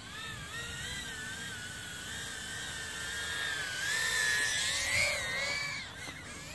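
Darwin FPV tiny whoop drone's small motors and ducted propellers whining, the pitch wavering up and down with the throttle. The whine grows louder and higher about four seconds in as the drone climbs, then eases near the end.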